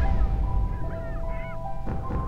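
A few short waterbird calls over a steady, low drone of trailer music, with a brief swish near the end.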